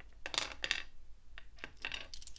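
Small carved crystal angel figurines clinking against each other and the wooden table as they are scattered out of a fluffy pouch: a run of light, separate clicks.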